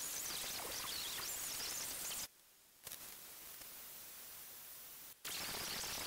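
Steady hiss of background noise with no machine tone. A little after two seconds in it drops to near silence for about half a second, then returns quieter until a brief dropout around five seconds in.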